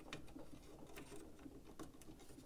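A few faint clicks and light handling noise from the hard plastic panels and hinges of a Fans Hobby MB-16 Lightning Eagle transforming robot figure as a wheeled panel is turned by hand.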